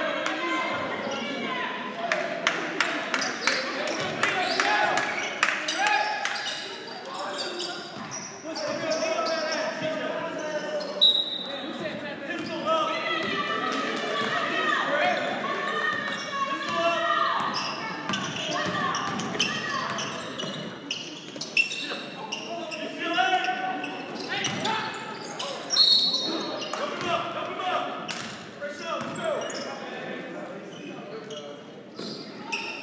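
Basketball being dribbled on a hardwood gym floor amid the echoing voices of players and spectators, with two short high-pitched squeaks, one around a third of the way in and one near the end.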